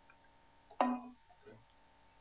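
Computer mouse clicks, with one louder click just under a second in and a few faint ticks after it.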